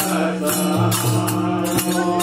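Group of voices singing a Gujarati devotional bhajan to a harmonium, whose steady held notes run underneath. A hand drum and jingling percussion keep a steady beat.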